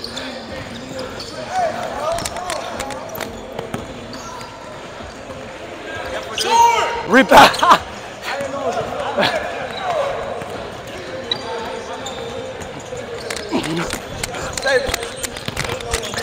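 A basketball bouncing on a hardwood gym court during play, with repeated short thuds and players calling out; a loud shout comes about seven seconds in.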